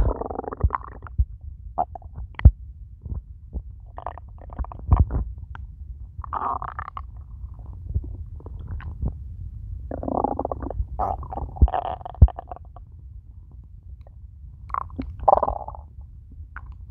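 An empty, hungry stomach growling and gurgling: irregular bursts of gurgles, a longer run of them around ten to twelve seconds in and another near the end, over a low steady rumble with short sharp pops.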